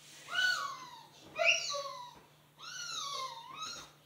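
A small child making three high-pitched, wavering wordless vocal sounds in a row, each gliding up and then falling in pitch.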